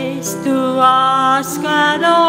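A woman singing a hymn solo with a wavering vibrato over steady held keyboard chords; she breaks off briefly and starts a new phrase about a second and a half in.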